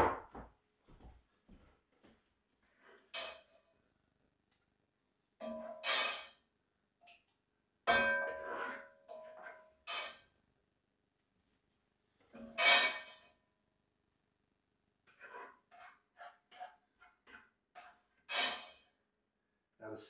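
Metal pots and utensils being handled at a stove: scattered clanks and clinks, several ringing briefly. A run of quick light taps follows in the latter part.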